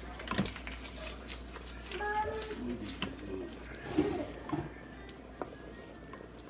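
Wooden spoon stirring thick red beans in a stainless steel Instant Pot inner pot, with scattered clicks and knocks of the spoon against the pot. A child calls "Mommy" about two seconds in.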